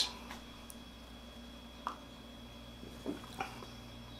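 Faint steady room hum with a few soft, brief mouth sounds as a man sips and swallows beer from a pint glass: one about two seconds in and a couple a little after three seconds.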